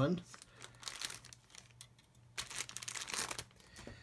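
Clear plastic bag crinkling and rustling as plastic model kit sprues are handled. It comes in two spells: one just after the start lasting about a second, and another a little past the middle.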